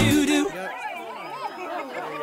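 Music stops about half a second in, giving way to several people chattering at once.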